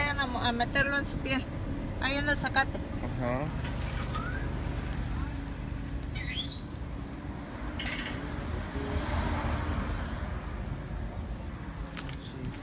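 Steady low rumble of road traffic on a city street, with a short high chirp about six and a half seconds in. Voices and laughter over the first few seconds.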